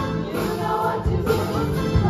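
Large ensemble cast of a stage musical singing together over live keyboard accompaniment.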